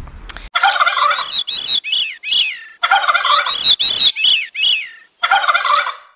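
Bird calls in three bouts of quickly repeated notes, each note rising and then falling in pitch, with short pauses between the bouts.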